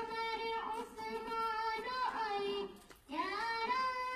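A young girl singing a naat (Islamic devotional song) unaccompanied in a high voice, holding long wavering notes. She breaks off briefly about three seconds in, then goes on singing.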